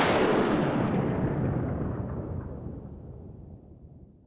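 A loud boom-like dramatic sound effect hit that closes a music cue, its echo dying away steadily over about four seconds.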